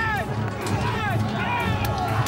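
Several men yelling and shouting together, with scattered sharp clicks and knocks, over background music.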